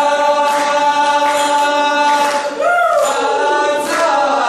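A group of Taiwanese indigenous men singing a chant together in harmony, holding long notes. About two and a half seconds in, one voice slides up and then falls away.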